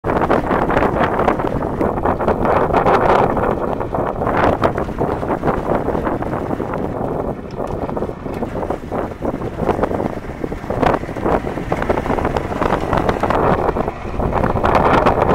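Wind buffeting the microphone in gusts: a loud, low, irregular rumble.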